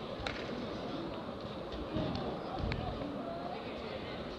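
Indistinct voices of onlookers around the mat, with two short sharp knocks, one near the start and one past the middle.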